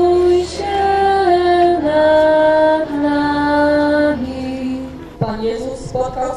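A woman singing a slow hymn in long held notes, the pitch stepping from note to note. The singing breaks off about five seconds in.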